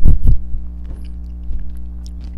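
Close-miked chewing of candy-coated pineapple, with a loud low thump right at the start and then soft wet mouth clicks. A steady electrical mains hum runs underneath.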